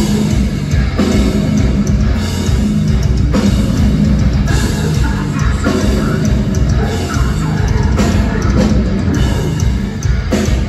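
A heavy metal band playing live at full volume: distorted electric guitars, bass and a drum kit pounding out a dense, heavy riff with repeated sharp crash accents, heard from within the audience in a concert hall.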